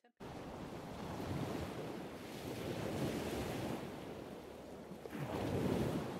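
Ocean surf sound effect: a rushing wash of water that cuts in suddenly just after the start, then swells and ebbs, swelling most near the end.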